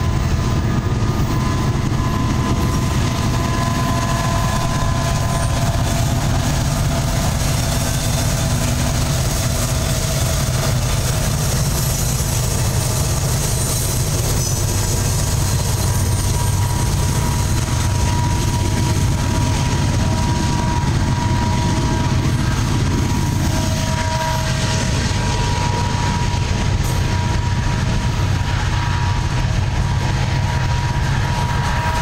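Norfolk Southern freight train passing close: EMD SD70ACe diesel locomotives go by, then a long string of coal hopper cars rolls past with a steady, loud wheel-and-rail rumble and a thin steady whine on top.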